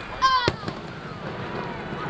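A firework bursts overhead with one sharp bang about half a second in, followed by a few fainter pops. A voice calls out briefly just before the bang.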